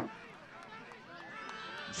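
Faint distant voices of players and spectators calling out across the field, with a louder voice cutting off at the very start.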